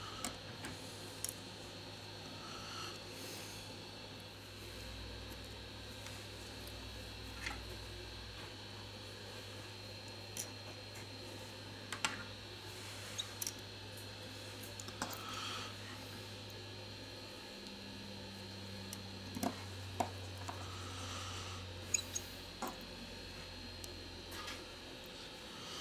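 Scattered small clicks and taps as gloved fingers and a plastic pry tool work the flex-cable connectors on a smartphone's mainboard, over a steady low hum.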